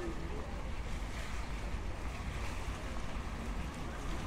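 Wind buffeting the microphone: a steady, fluctuating low rumble under an even outdoor hiss.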